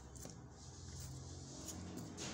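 Quiet room tone: a low steady hum under a faint hiss, with one faint click about a quarter second in.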